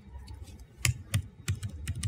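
Laptop keyboard keystrokes: a few separate, sharp key taps, most of them in the second half.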